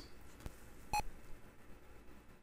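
A single short electronic beep about a second in, as the MAME-emulated Tandy Color Computer 3 boots into Disk Extended Color BASIC; otherwise quiet room tone.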